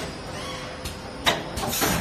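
Automatic plastic ampoule forming, filling and sealing machine running with a steady mechanical hum. A sharp knock comes about two-thirds of the way through, followed near the end by a short hiss of air from its pneumatic cylinders.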